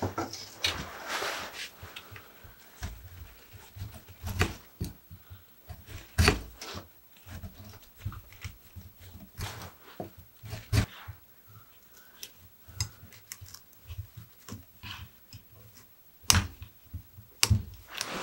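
Bonsai hand tools working the trunk of a small conifer: irregular clicks, scrapes and sharp snaps as bark and stubs are stripped and cut with a carving tool and a knob cutter. The loudest snaps come a few seconds apart, two of them near the end.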